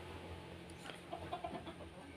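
Quiet background ambience with a few faint, short animal calls about a second in.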